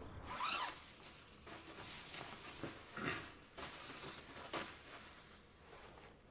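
A run of about eight short rustling scrapes at irregular intervals, the loudest about half a second in and another strong one about three seconds in.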